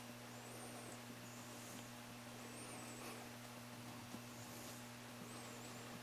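Quiet room tone: a steady low electrical hum under faint hiss, with a faint, high, arching chirp every second or two.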